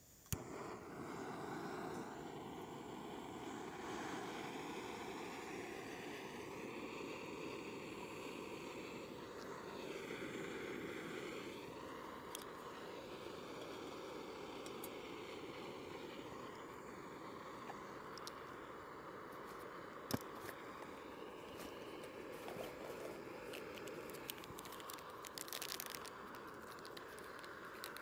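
Canister gas camping stove lit with a click, then its burner hissing steadily under a pot of water being brought to the boil. A few light clicks of handling near the middle and end.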